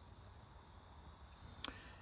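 Near silence: faint low room hum, with one faint short click about one and a half seconds in.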